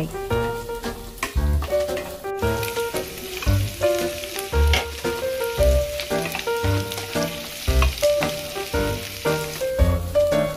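Chopped onions and capsicum sizzling in hot oil in a non-stick pan as they are stirred with a wooden spatula, over background music with a steady beat.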